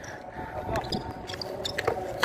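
Outdoor pickup basketball game: faint voices of players, then a few sharp knocks near the end from a basketball bouncing on the concrete court.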